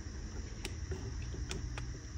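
A few light clicks as a small LED video light is handled on a wooden desk, over a low steady rumble of background noise.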